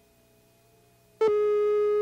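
Faint hum of near silence, then, a little over a second in, a steady reference tone with many overtones starts suddenly and holds: the line-up tone laid under a videotape countdown slate.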